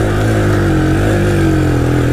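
A quad bike's engine running under throttle at fairly steady revs, its pitch wavering slightly up and down as it drives across soft grassy ground.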